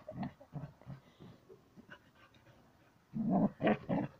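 Border collie making a few soft, low vocal noises at play with its ball, then a louder run of them near the end.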